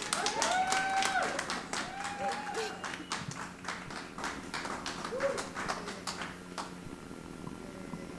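Light clapping by a few people at the end of a song, with short voiced cheering calls over it. The clapping thins out and stops near the end.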